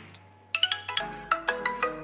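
Xiaomi Poco X3 Pro ringtone starting about half a second in for an incoming call: a fast melody of short, struck notes, several a second.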